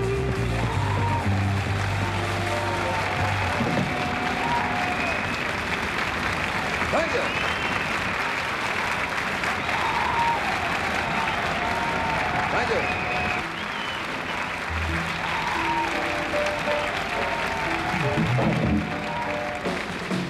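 Audience applauding between songs, with scattered notes from the band's bass, guitar and drums underneath.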